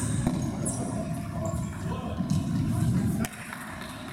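Indoor futsal play in a sports hall: players running, with short shoe squeaks on the painted floor, a couple of sharp ball strikes and some shouting. The low rumble underneath drops away a little after three seconds in.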